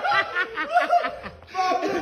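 A person laughing in a quick string of short repeated ha-ha pulses that tail off about a second in; another spell of voice starts near the end.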